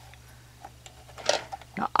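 Quiet room tone with a steady low hum and a few faint light ticks of a metal loom hook against the plastic pegs of a knitting loom as loops are lifted off, followed by an intake of breath and a spoken word near the end.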